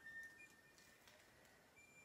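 Near silence: room tone, with a faint thin high tone held for a moment.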